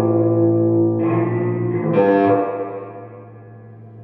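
Electric guitar played through a Genz Benz Diablo 100 tube amplifier with its spring reverb on: sustained chords, a new one struck about one and two seconds in, then ringing out and fading near the end. The reverb is working again now that the bad quick-connect on the reverb tank's transducer has been jumped with alligator clips.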